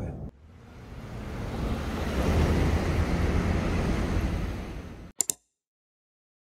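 A steady rushing noise swells up over about two seconds, holds, then fades and cuts off with two short clicks.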